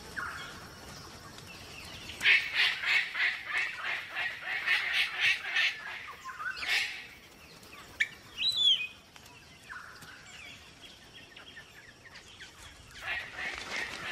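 Palm cockatoos calling: a fast run of harsh, honking calls several times a second, then a sharp screech and a short whistle that rises and falls, and another run of harsh calls near the end.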